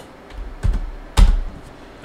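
A few scattered computer keyboard keystrokes, the loudest one a little over a second in.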